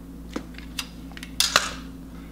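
A few light handling clicks, then two sharp clacks about one and a half seconds in, as a tape measure's blade is retracted into its case and put away.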